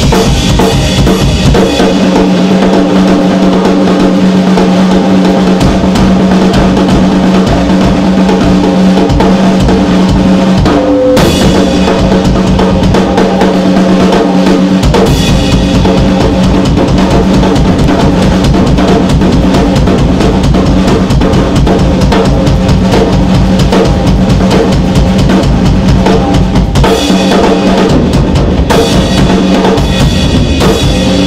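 Drum kit solo: fast, dense rolls on snare and toms. About halfway through, the bass drum comes in and drives steadily under the rolls.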